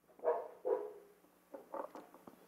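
A man's two short, soft wordless murmurs close to a handheld microphone, in the first second, followed by a couple of faint small sounds.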